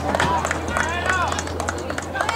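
Players running during a live game, with short squeaks and knocks from the play and spectators' voices over it.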